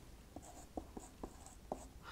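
A marker pen writing on a whiteboard, faint, in a handful of short squeaky strokes as a letter and a bracketed number are drawn.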